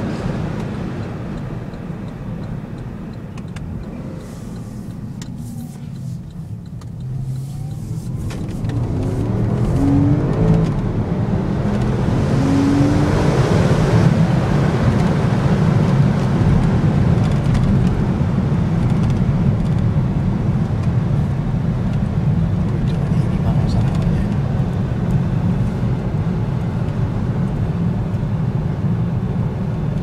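Porsche Panamera S's 4.8-litre V8 and road noise heard from inside the cabin while driving. The engine runs softly at first, then the car accelerates from about eight seconds in, engine pitch climbing to around thirteen seconds, and settles into a steady, louder cruise.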